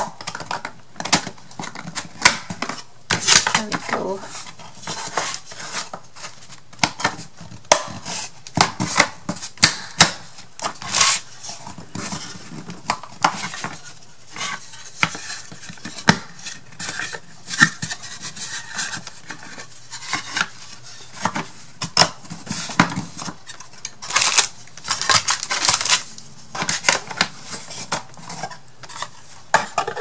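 Thin wooden craft-kit pieces being handled and fitted together on a table: a steady run of light clicks, knocks and taps of board against board, with short stretches of scraping and sliding as parts are pushed into slots, longest a little before the end.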